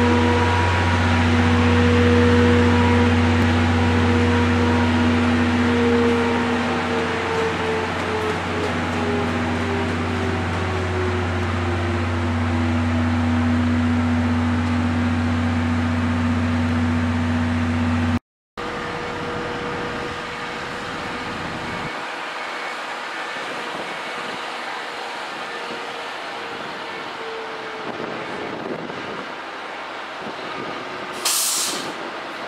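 Steady electrical hum from a stopped electric train's onboard equipment, with one tone that slowly falls in pitch. After a break about 18 seconds in, a quieter hum continues, losing its low end a few seconds later.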